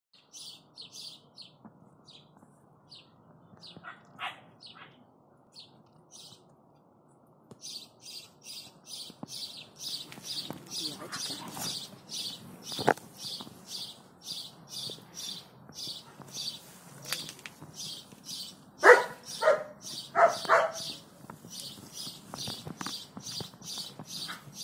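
A small bird chirping over and over, short high chirps about two to three a second, pausing briefly about a quarter of the way in. About three quarters of the way in come three louder animal calls, the loudest sounds here.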